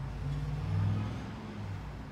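A low engine hum, as from a motor vehicle, that swells a little under a second in and then eases back.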